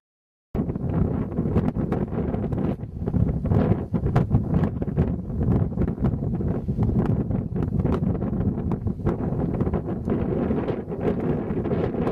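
Wind buffeting the camera's microphone: a gusty, rumbling roar with frequent crackling pops. The sound is cut out for the first half second, then the wind noise runs on without a break.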